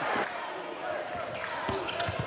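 Basketball arena game sound: a steady crowd murmur with a ball bouncing on the hardwood court.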